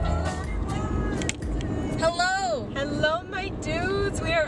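Steady road and engine noise inside a moving car's cabin, with a woman's voice talking from about halfway through.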